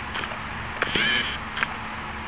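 A dog giving one short, high whine about a second in, with a few small sharp clicks around it, over steady outdoor background noise.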